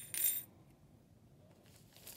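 Small beads and bells dropped into the half of a plastic egg, clinking in two quick bursts near the start.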